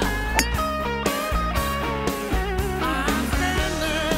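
Background rock music with a guitar melody over a bass line.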